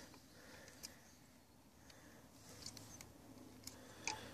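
Near silence: faint background hush with a couple of faint clicks.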